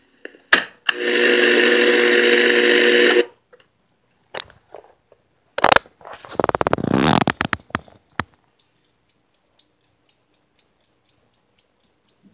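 Clock radio cassette player's buttons clicking under a finger, followed by a steady buzzing whir of about two seconds that cuts off abruptly. A clunk and a quick rattle of clicks come a few seconds later.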